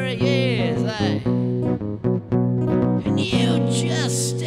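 A man singing along to a strummed acoustic guitar. His voice is heard in the first second and comes back about three seconds in, with guitar chords ringing in between.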